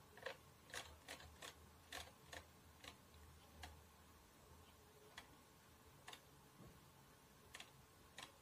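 Faint, sharp clicks of a computer mouse's scroll wheel turning notch by notch, about two a second at first, then sparser.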